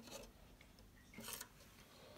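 Near silence with two faint, brief rubbing scrapes, one at the start and one a little over a second in: a clear plastic container being shifted against the plastic floor and walls of the tank.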